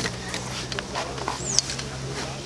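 Outdoor ambience with a steady low hum and faint background voices, and a single short, high bird chirp about one and a half seconds in.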